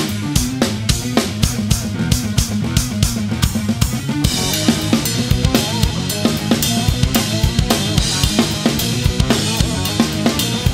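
Rock drum kit played fast and densely along to a progressive-metal band backing track, with kick, snare and toms in tight rhythmic figures. A cymbal wash comes in about four seconds in.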